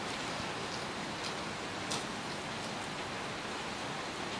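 Steady hiss of background room and recording noise, with a couple of faint ticks.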